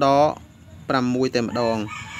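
A man's voice speaking in short, drawn-out syllables: a burst right at the start, then several syllables from about one second in.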